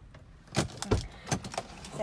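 A quick, irregular run of about six sharp clicks and knocks over a second and a half, starting about half a second in.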